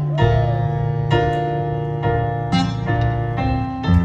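Electric stage keyboard playing slow sustained piano chords, a new chord struck about once a second.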